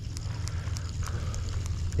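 Fishing reel being cranked to retrieve a hooked fish, giving a faint rapid ticking, a few clicks a second, over a low steady rumble.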